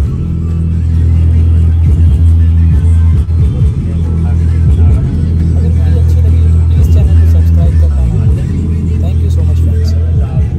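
A Blaupunkt XLF 10A compact powered under-seat subwoofer plays a Punjabi song loudly, mostly deep bass notes with little above the low end. This is its sound test after the faulty woofer was replaced, and the unit is working again.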